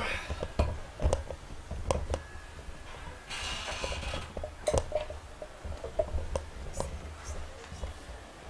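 Scattered knocks and clicks of microphone stand and instruments being handled while a band sets up, over a steady low hum, with a short hiss about three seconds in.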